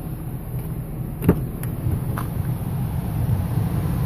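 Rear door of a 2006 GMC Yukon Denali unlatching with one sharp click about a second in, followed by two lighter clicks, over a steady low hum.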